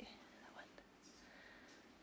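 Near silence: room tone, with a faint murmured word about half a second in.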